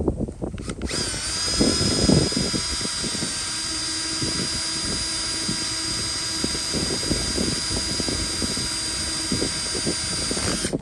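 Cordless M18 drill boring a 1/8-inch hole through the steel bus roof at slow speed under heavy pressure: a steady motor whine that starts about a second in, with the grinding of the bit biting into the metal, loudest a second or two in.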